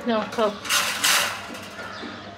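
Wire birdcage rattling and clinking as a hand works inside it by the food tubs, loudest from about half a second to just over a second in. It opens with two quick squeaks falling in pitch.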